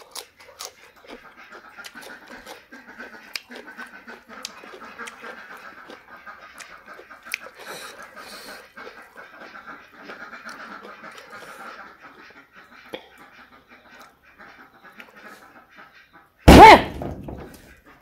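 A duck chattering in the background, a long, rapidly fluttering run of low calls, over faint clicks of eating. About a second and a half before the end comes one sudden, very loud burst.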